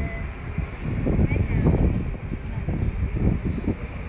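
Wind buffeting a phone microphone outdoors, an uneven low rumble, with faint voices of people nearby in the middle.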